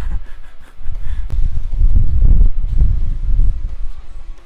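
A winded man laughs, then loud low rumbling buffets the microphone for about two seconds.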